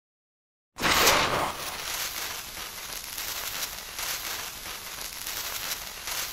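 A lit fuse fizzing and crackling as it burns, spitting sparks. It starts suddenly under a second in with a louder burst, then settles into a steady hiss full of small crackles.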